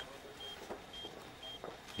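Hospital patient monitor beeping with each heartbeat: a short, high beep about twice a second, a fast pulse of around 120 beats a minute.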